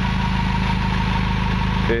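Honda H22 2.2-litre DOHC VTEC four-cylinder engine, swapped into an Accord, idling steadily with the hood open. It is running with an ignition-timing problem that the owner has not yet solved.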